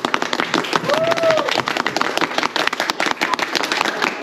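A group of people clapping their hands, many quick sharp claps overlapping throughout, with voices and a short rising-and-falling call about a second in.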